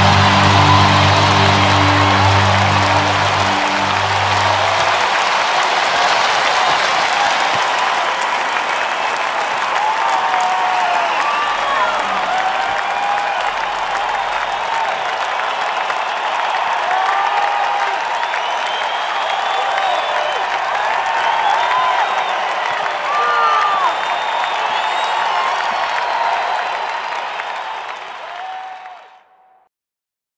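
Large concert audience applauding and cheering, with whistles, after a live heavy metal song; the band's last held notes ring out for the first few seconds. The applause fades out near the end.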